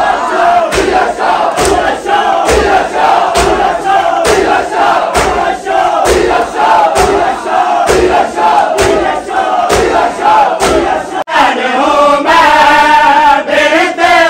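A crowd of men chanting a noha together, with unison chest-beating (matam): sharp hand-on-chest slaps, a little over one a second, keep the beat. Near the end the voices hold a longer, steadier sung line.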